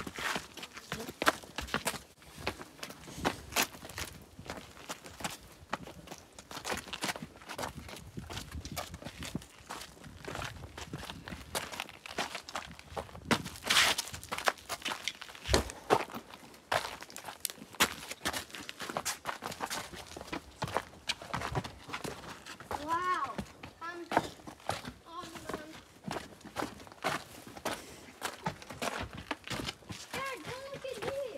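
Footsteps scuffing and crunching on a gritty dirt-and-sandstone trail, an irregular run of steps throughout. A few short pitched calls break in near the end.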